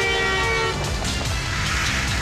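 A car horn held on a steady two-note tone that cuts off under a second in, over background film music that runs on.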